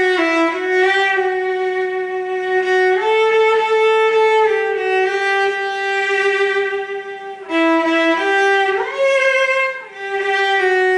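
Solo cello, bowed, playing a slow melody of long held notes, with short breaks between bow strokes near the end.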